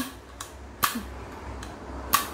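Olympic spinning reel's wire bail arm being flipped open, with one sharp click about a second in and a few faint ticks from the reel being handled.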